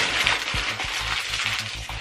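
A sheet of paper torn from a pad being crumpled into a ball by hand: a continuous crackling rustle.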